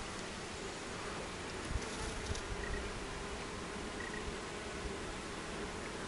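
Honeybees buzzing steadily on and around a hive frame pulled from an open hive, a continuous even hum. A brief low bump sounds just before two seconds in.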